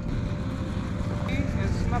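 Engine idling steadily with a low rumble, with a brief voice near the end.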